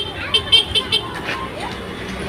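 Street background of traffic noise with faint voices, broken in the first second by a quick run of five or six short, sharp, high sounds.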